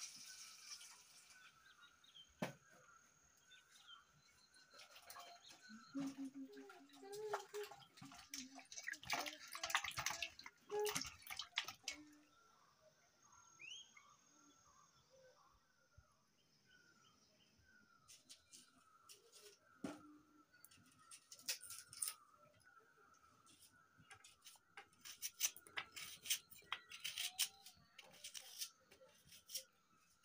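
Water poured from a steel cup into a steel bowl for about the first second, then scattered clicks and knocks of kitchen work. Faint short bird chirps repeat through the second half.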